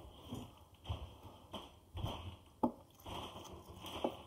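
A hand mixing a wet flour, milk and egg dough in a glass bowl: intermittent soft squishing and scraping, with a few short sharp clicks.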